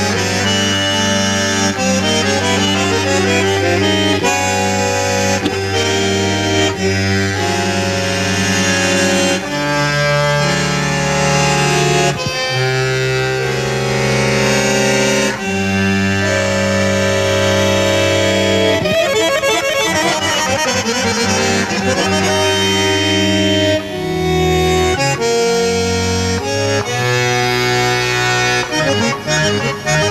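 Piano accordion improvising, with long held bass notes and chords under a melody. A fast run of notes comes about two-thirds of the way through, and quick short notes follow near the end.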